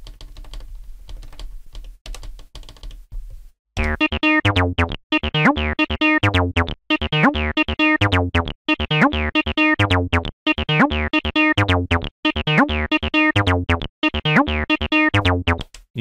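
Cyclone Analogic TT-303 Bass Bot, a TB-303 clone synthesizer, playing a sequenced bass line of short repeating notes with pitch slides between some of them, starting about four seconds in after a few soft button clicks. The pattern runs in a changed time mode rather than the standard steps.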